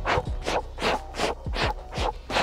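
Rhythmic scuffling and rustling in dry grass, about three scratchy bursts a second, during a puppy's tug play on a fur toy.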